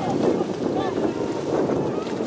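Wind on the microphone with distant shouts from rugby players and spectators.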